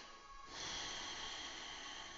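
A person's long, audible breath, mostly through the nose, starting about half a second in, over faint soft background music. It is the steady, controlled breathing of a power yoga flow, held in the lunge between cues.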